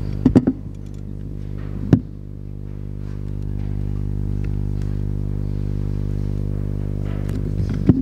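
Steady low electrical hum with a buzzy, evenly stacked tone on the hall's microphone and sound system, with one sharp knock about two seconds in.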